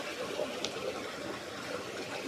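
Water of a small stream running steadily over stones in a mill channel: a low, even trickle.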